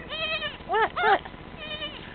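Young Myotonic (fainting) goat kid bleating about four times in short calls, each rising and falling in pitch, that sound like "What? What?"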